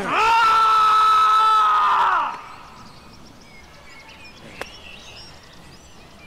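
A voice holding one long, high cry for about two seconds; it rises at the start and falls away at the end. Then there is quiet outdoor background, with a single sharp click about four and a half seconds in.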